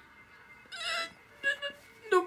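A short wavering, voice-like cry about a second in, followed by two brief fainter sounds.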